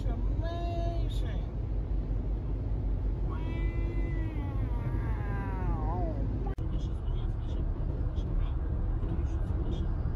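Two long, drawn-out meow-like calls, each sliding down in pitch, over steady road noise inside a moving car. After a sudden cut about six and a half seconds in, only the car's road noise remains.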